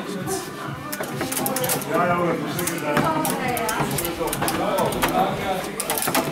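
Foosball in play: sharp clacks of the ball striking the plastic figures and table walls, with rods knocking, over voices chattering in the hall.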